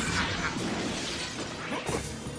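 Cartoon battle sound effect: a crash, like something shattering, as a monster's attack lands. It dies away over about a second and a half, and a second short hit comes near the end.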